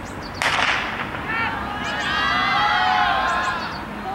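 A race starter's pistol fires once with a sharp crack about half a second in, starting the 400 m. Then several voices shout encouragement, rising and falling for a couple of seconds.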